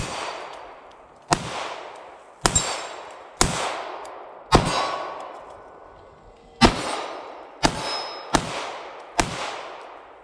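Bul Armory SAS II Comp 3.25 9mm compensated pistol firing 124-grain hollow points: a string of single shots roughly a second apart, with a pause of about two seconds in the middle, each shot echoing away. A metallic ring follows some shots, from hits on steel targets.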